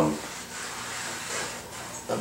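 Faint rubbing as a hand slides along the floor and front lip of an aluminium-extrusion machining enclosure.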